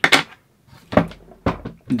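A few short knocks and clunks of things being handled on a wooden workbench: a 3D-printed plastic part set down and a cordless drill with its battery lifted off the bench. The knocks come near the start and about one and one and a half seconds in.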